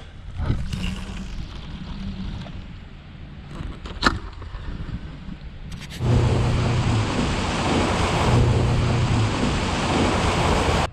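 A small boat's motor running as the boat moves along the water, with one sharp click about four seconds in. About six seconds in, the sound jumps to a much louder rush of wind and churning water over the engine hum as the boat runs at speed, throwing a wake.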